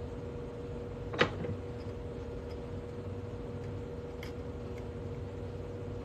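Steel arbor press and coin ring reducing die being worked by hand: one sharp metal-on-metal click about a second in, then a few faint ticks, over a steady background hum.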